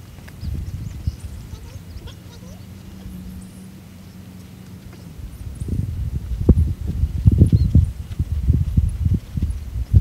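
Wind buffeting a phone's microphone: an uneven low rumble with thumps, gusting harder from about halfway through.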